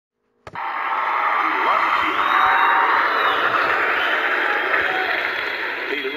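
Live comedy-club audience laughing and applauding, cutting in suddenly about half a second in and carrying on as a dense, steady wash of crowd noise with a few faint whoops, on a sampled stand-up recording.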